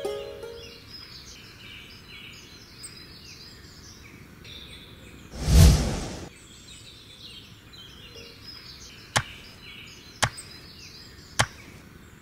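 Plucked-string film music fades out in the first second, and halfway through comes a loud swell of noise about a second long, deepest at the bottom. After that, birds chirp softly, and three sharp strikes about a second apart near the end are a hoe chopping into soil.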